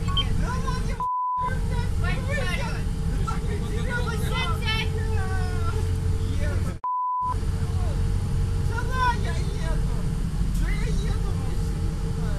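A man shouting excitedly inside a moving public-transport vehicle, over the cabin's steady low rumble and hum. Two short steady beeps, each in a brief dropout of the sound, bleep out his words about a second in and again near seven seconds.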